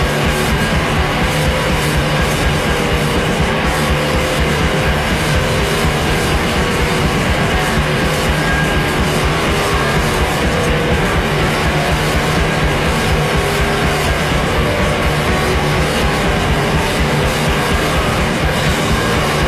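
Instrumental passage of a post-punk rock song: loud, dense band playing with drums, with no vocals.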